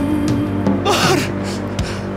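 A man sobbing: one ragged, gasping cry about a second in, over background music that holds a long note at the start.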